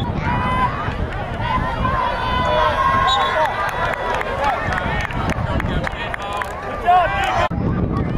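Several voices of players and sideline spectators shouting and calling over one another at a youth football game, with one long drawn-out call in the middle. The sound drops out briefly near the end.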